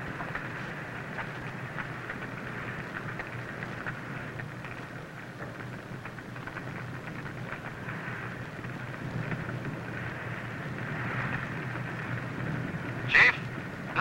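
A structure fire burning: a steady rushing noise with scattered faint crackles. A short, sharp loud burst comes near the end.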